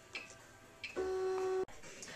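Two faint clicks, then about a second in the Cricut electronic cutting machine gives a short steady tone, well under a second long, which cuts off abruptly.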